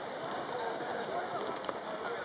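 Hooves of harnessed artillery horses clopping on the tarmac as the standing team shifts, with a sharp hoof knock near the end, over a murmur of voices.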